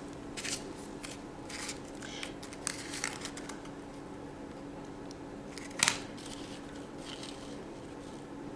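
Light handling noises as a small cardboard box and a Sphero Mini robot ball are picked up and set back down on a paper poster map: faint scattered taps and scrapes, with one sharper knock about six seconds in. A faint steady hum runs underneath.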